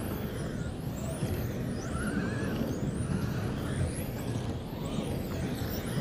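Electric 1/10 RC touring cars racing on a carpet track, their motors and drivetrains making high-pitched whines that repeatedly rise and fall as they accelerate and slow, over a steady low rumble.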